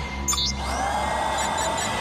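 A whirring, whooshing transition sound effect for an animated end screen: a short high blip, then a sweep that swells in about half a second in, holds steady and stops at the end, over a low music bed.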